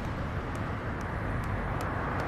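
Steady low rumble of traffic and car ambience, with faint light clicks of a smartphone touchscreen keyboard being tapped, starting about half a second in and coming roughly twice a second.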